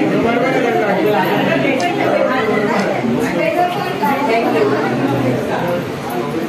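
Several people talking over one another in a room, a steady run of overlapping chatter.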